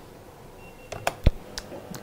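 A telephone line being connected for a phone-in: a short high beep, a few sharp clicks and one low thump over quiet studio room tone.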